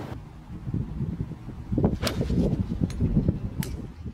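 Rustling and wind noise on a clip-on microphone as a golfer makes slow practice swings, with a short click about two seconds in and another near the end.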